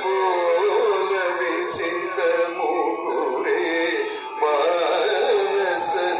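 Devotional music with a singing voice carrying a continuously wavering melody.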